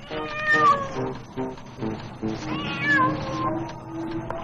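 A cat meowing twice, the second call about two and a half seconds in, over background film music of short repeated low notes and a held tone.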